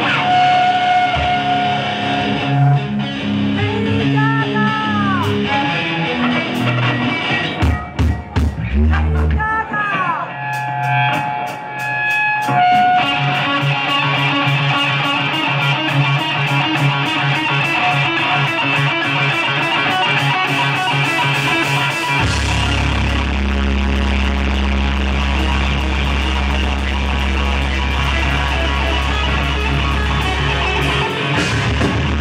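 Live rock band playing: an electric guitar plays alone at first, with notes that swoop in pitch, then drums and the rest of the band come in and fill out the sound. A heavy, deep bass line joins about two-thirds of the way through.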